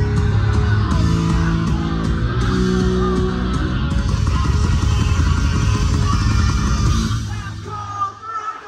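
Live hard rock band playing loud, with electric guitars, bass and drums filling the sound. The band stops about seven seconds in and the music falls away.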